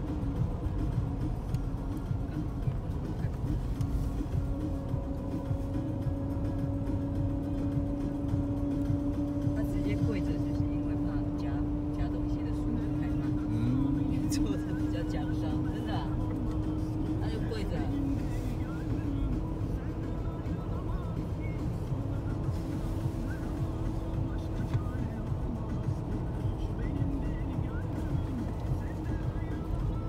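Road and engine noise inside a moving car, with a low engine drone that creeps slowly up in pitch and steps up once about halfway through.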